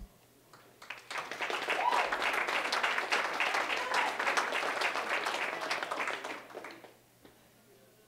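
Audience applauding, starting about a second in and dying away about a second before the end.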